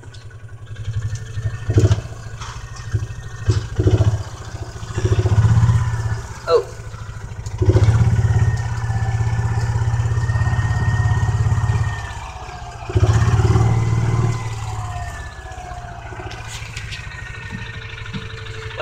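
Utility vehicle's engine running as it is driven, swelling louder in several stretches as it accelerates, with a faint steady whine over the loudest part.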